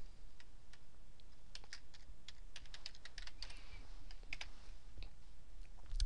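Computer keyboard keys clicking as someone types, in irregular keystrokes that are densest in the middle, over a faint low hum.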